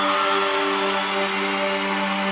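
A concert crowd's noise over a sustained keyboard chord, the quiet opening of a song's intro.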